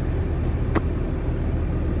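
Steady low rumble of an idling diesel truck engine, with a single sharp click about three-quarters of a second in.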